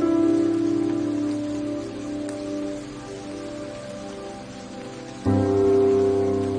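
Soft instrumental piano chords over a steady bed of rain: one chord sounds at the start and dies away over about five seconds, then a new chord is struck near the end.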